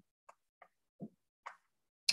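Near silence, broken by four faint, very short clicks spread through it.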